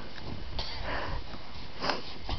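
Two short breathy sniffs, one about half a second in and one near the end, over a low rumble of wind on the microphone.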